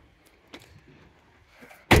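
Faint open-air background with a small tick about half a second in, then a sharp knock near the end as a voice starts speaking.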